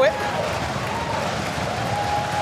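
Studio wind machine blowing, a steady even noise with a faint steady whine.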